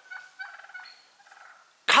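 A flock of wild turkeys clucking faintly: a quick run of short, high clucks that dies away after about a second and a half.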